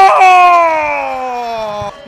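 A football commentator's drawn-out goal cry in Spanish: one long held shout that slowly falls in pitch, then breaks off near the end.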